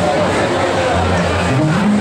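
Live band playing loudly on stage: drums, electric guitar and electric bass in a dense, steady mix with sustained low bass notes, and a rising slide near the end.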